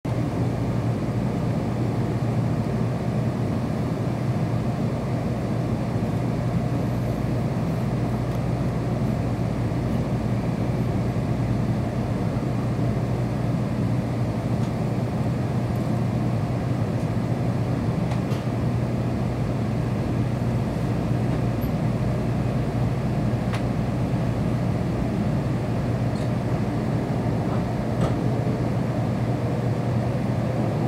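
Steady running noise inside the passenger cabin of a Kyushu Shinkansen N700-series train pulling out of a station and gathering speed: a low hum with a few faint clicks, and a rising motor whine near the end.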